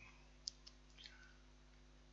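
A computer mouse click about half a second in, followed by a couple of fainter ticks, against near silence.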